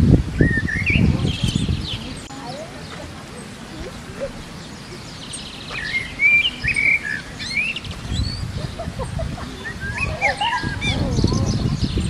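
Small birds chirping and twittering, with short rising and falling calls in spells near the start, around the middle and near the end, over a low rumble that is louder at the start and near the end.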